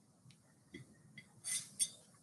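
Razor blade scraping paint off a glass bottle: a few faint ticks, then two short scraping strokes about a second and a half in.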